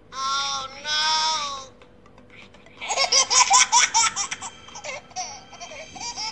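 High-pitched laughter: two drawn-out high vocal sounds, then about three seconds in a fast run of giggling pulses lasting about two seconds.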